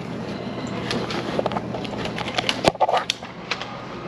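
Footsteps and scattered sharp clicks on a hard marble tile floor, over a steady low room hum. One louder knock comes about two and a half seconds in.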